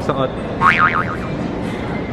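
A brief cartoon-style boing sound effect, a high warble that slides quickly up and down twice about half a second in, over a steady background of indoor crowd noise.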